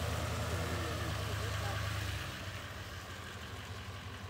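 Chevrolet Silverado pickup truck's engine running at low speed as the truck drives away on a dirt road. The steady low hum fades after about two seconds.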